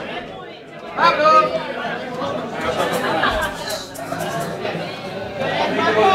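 Chatter of several people talking over one another in a room, with no music playing.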